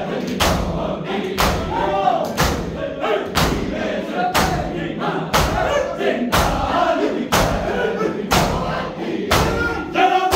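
A large group of men beating their chests in unison (matam), with a loud, sharp slap about once a second. Between the strikes, men's voices chant a noha (mourning lament).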